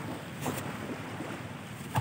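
Steady outdoor wind rumbling on the microphone, with one short, sharp breath about half a second in from a man straining through push-ups.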